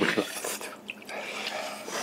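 A person chewing and gnawing meat off a braised beef bone: soft, wet mouth sounds with a small click about a second in.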